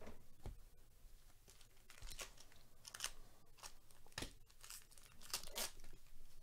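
A foil wrapper of a 2022 Topps Stadium Club baseball card pack being torn open and crinkled by hand, in a series of short rips and crackles that bunch up in the second half.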